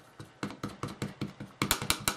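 A run of light, irregular plastic clicks and taps, busiest near the end, as clear stamps are handled and set onto a clear acrylic stamping block on the work surface.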